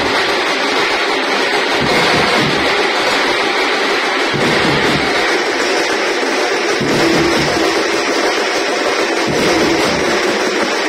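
Drum band of snare-type side drums and a big bass drum playing together: a loud, dense beat with bass-drum thuds coming and going under the clatter of the side drums.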